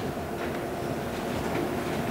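Faint rustle of Bible pages being leafed through to find a passage, over a steady low hum in the hall.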